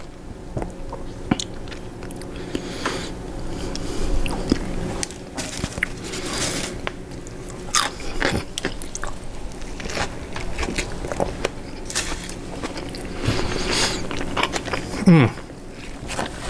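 A person biting and chewing a Chicago-style hot dog, with irregular crunches from its toppings. There is a short hummed "mm" near the end.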